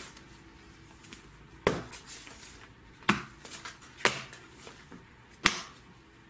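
Bagged and boarded comic books being handled and flipped through: plastic sleeves rustling, with four sharp smacks about a second or so apart as the books are moved and set down.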